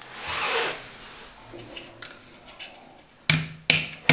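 A brief rustle, then two sharp claw-hammer knocks near the end, each with a short ring, as a wall socket plate is tapped into place.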